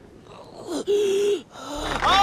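A person's sharp gasp, then a loud held strained cry of about half a second, about a second in; a lower vocal sound swells near the end.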